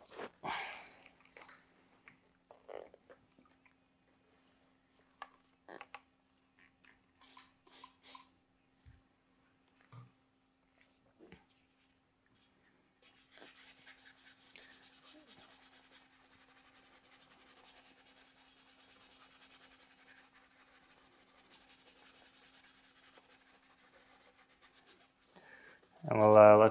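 Faint scrubbing of a detailing brush working wheel cleaner over a wet wheel barrel, starting about halfway in, after a few scattered faint clicks and knocks, with a faint steady low hum throughout.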